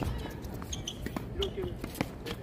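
Tennis rally on a hard court: a series of short sharp knocks from ball bounces and racket strikes, mixed with players' footsteps.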